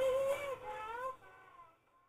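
An old gramophone record playing a singing voice that holds a wavering note, then glides, over the disc's surface hiss. It fades out about a second and a half in.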